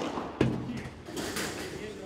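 Two sharp knocks of a padel ball, one at the start and a second about half a second in, followed by crowd voices and cheering rising about a second in as the point ends.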